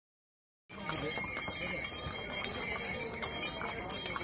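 Mules' hooves clip-clopping on a paved stone path with harness bells jingling, starting a little under a second in.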